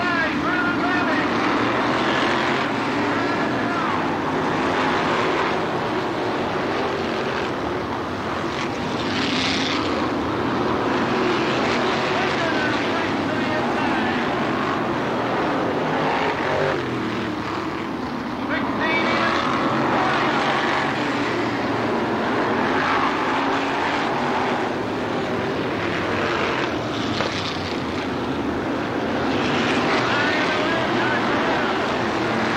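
Dirt-track modified race car engines running around the track, several cars at once, their engine notes rising and falling as they pass.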